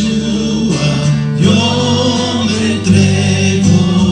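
Live worship music: voices singing a Spanish-language praise song together over sustained instrumental accompaniment.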